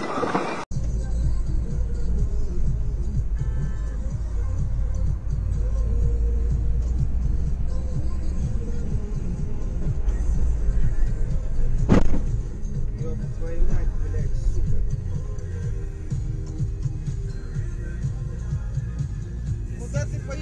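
Steady low rumble of a car driving, engine and road noise heard from inside the cabin, with one sharp knock about twelve seconds in.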